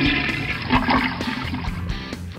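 Ceramic toilet flushing after its push button is pressed, water rushing through the bowl in a flush test loaded with fake waste.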